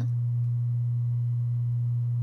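Steady low-pitched electrical hum, a single unchanging tone, with no other sound over it.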